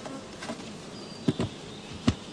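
Honeybees buzzing around an open hive, with a few sharp knocks of hive equipment being handled, two of them close together just past the middle.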